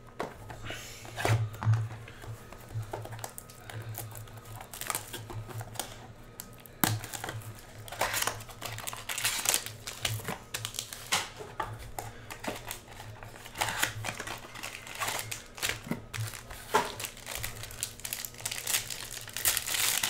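Foil wrapper of a trading card pack crinkling and crackling irregularly as it is handled and torn open.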